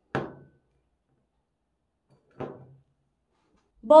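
Two short thuds about two seconds apart, like objects set down on a table, then a woman starts calling out loudly just before the end.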